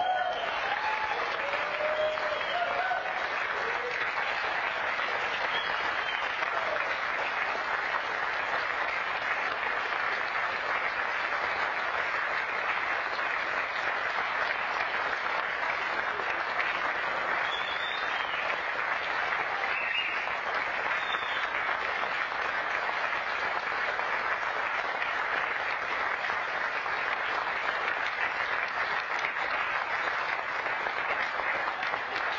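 Audience applauding steadily after an a cappella song, with a few faint voices calling out in the first few seconds.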